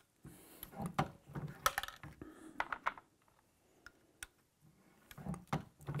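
Scattered light clicks and clacks from an RCBS Rebel single-stage reloading press: a brass case is set into the shell holder and the press handle is worked for a sizing and depriming stroke.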